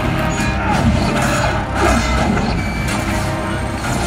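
Film score playing through cinema speakers, with short sharp hits from the fight sound effects scattered through the first half.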